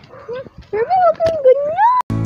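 A puppy whining and yipping in play, ending in a drawn-out whine that rises in pitch.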